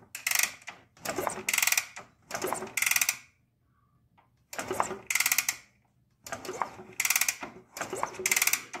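A 1969 Honda CT90's single-cylinder engine being kicked over with the kickstarter: about six short bursts of ratcheting, gear-driven whirring, each under a second, with a longer pause near the middle. The engine does not fire, because there is no spark at the plug.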